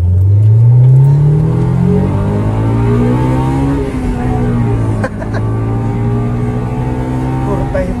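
Honda Civic SiR's B16A 1.6-litre DOHC VTEC four-cylinder accelerating hard, heard from inside the cabin. The engine note climbs steadily for about four seconds and drops at an upshift. It then pulls on at a steadier pitch in the next gear.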